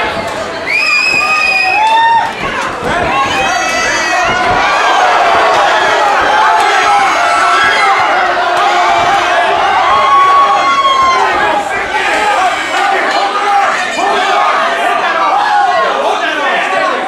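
A fight crowd shouting and cheering, many voices yelling at once, with one high held yell about a second in.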